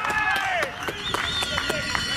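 Several voices shouting over one another during an amateur football match, high and strained, with a few sharp claps or knocks among them.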